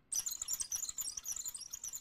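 Cartoon monkey chattering in rapid, high-pitched squeaks that start just after a brief silence.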